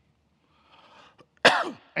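A man coughs once, sharply, about a second and a half in, after a moment of near silence.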